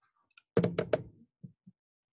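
A quick run of about four sharp knocks about half a second in, followed by two faint thumps.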